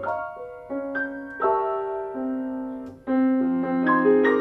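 Grand piano played solo in a slow jazz ballad: chords struck about once a second and left to ring and fade, with a brief lull just before a fuller chord about three seconds in.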